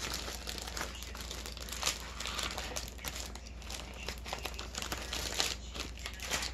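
Packaging crinkling and rustling as it is handled, an irregular run of small crackles.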